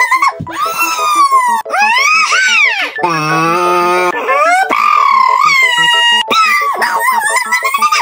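A man making exaggerated wordless vocal sounds: high wailing and whimpering cries that swoop up and down in pitch, with a low drawn-out moan held for about a second near the middle. Background music with a steady beat runs underneath.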